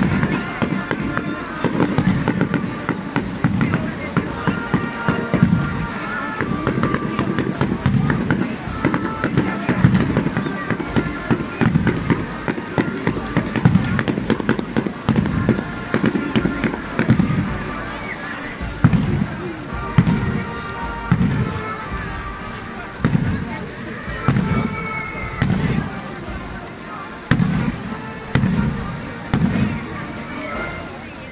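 Street marching band playing brass tunes over a steady bass-drum beat, with a dense crackle of sharp bangs throughout.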